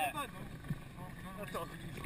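Faint, scattered voices over a low, steady outdoor background noise.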